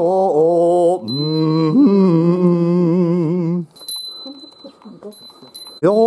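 A Buddhist goeika pilgrimage hymn sung slowly by a small group, each syllable drawn out into long, wavering notes. A small handbell rings about a second in, again as the singing breaks off, and twice more during the pause before the next phrase begins.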